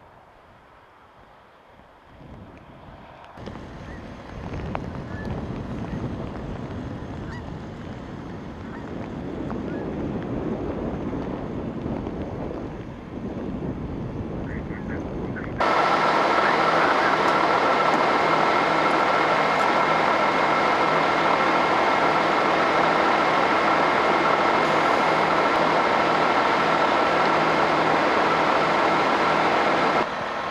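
Storm wind noise swelling over the first half. About halfway in, it cuts to a diesel semi-truck idling close by: a loud, steady drone with a pulsing low note and a steady whine.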